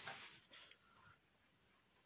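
Faint rustle of paper, like book pages being handled, over the first half second or so, then near silence.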